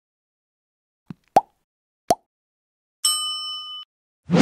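Animated like-and-subscribe sound effects: a faint click, then two sharp pops about three quarters of a second apart, as of buttons being clicked. Then a bright bell-like notification ding, held for almost a second before it cuts off suddenly.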